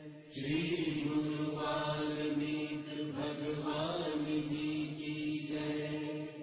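Devotional chanting of a mantra by voice over a steady held drone.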